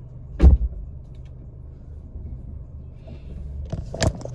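A car door shuts with a single heavy thud about half a second in, then the car's engine idles with a steady low hum, heard from inside the cabin.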